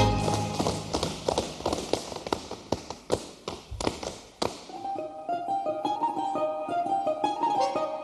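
Russian folk dance music with sharp, rhythmic slaps of hands against boots for about the first four and a half seconds. Then the slapping stops and a quick instrumental folk melody of rapid notes takes over.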